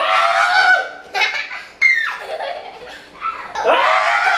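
Loud laughter with high-pitched squeals in short bursts, one squeal falling sharply in pitch about two seconds in.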